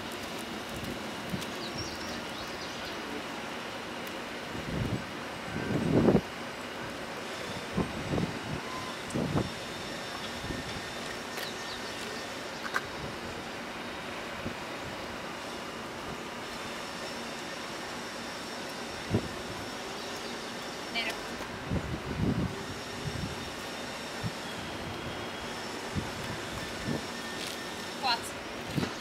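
Steady outdoor background noise with a few short, faint voices; the loudest comes about six seconds in.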